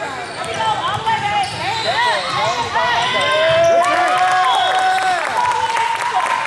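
Basketball shoes squeaking in many short chirps on a hardwood court and a basketball being dribbled, with spectators calling out.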